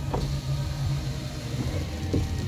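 Electric window motor of a 2013 Volkswagen Golf running as the door glass travels, a steady low hum with a few light clicks.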